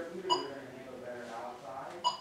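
Two short electronic beeps, about a second and a half apart, from the Permobil F5 VS power chair's joystick controller just after its power is switched back on.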